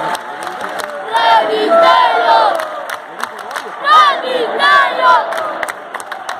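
Arena crowd shouting and cheering at a live wrestling match, with loud, high-pitched shouts from spectators close by, repeated every half second to a second and peaking near the end, over a steady crowd din and scattered sharp claps.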